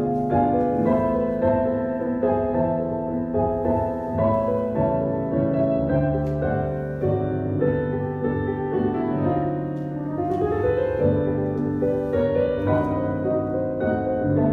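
Solo piano music playing, accompanying a ballet exercise.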